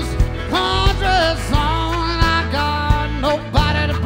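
Live country harmonica solo, with bending, wavering notes, over a guitar strummed in a steady rhythm.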